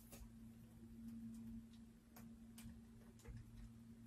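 Near silence with a steady faint low hum and a few faint, scattered clicks from a vacuum's power cord being wrapped around the plastic cord hooks on its body.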